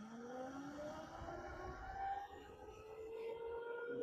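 Tuned electric dirt bike's motor whining under hard acceleration, several tones climbing steadily in pitch as speed builds, over low wind and road rumble.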